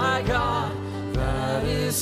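Live worship band playing: acoustic and electric guitars over a steady bass, with lead singers singing a slow congregational worship song.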